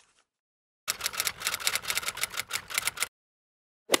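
Typing sound effect: a rapid run of sharp key clicks, about eight a second, starting about a second in and stopping abruptly after about two seconds, as text types itself out on a title card.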